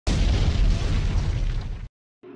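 Explosion sound effect: a sudden blast with a deep rumble that fades slightly, then cuts off abruptly near the end.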